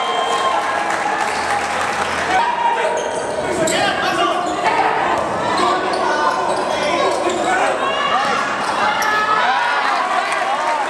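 Live basketball game sound in a sports hall: a ball bouncing on the court under players' and spectators' voices and calls, all echoing in the hall.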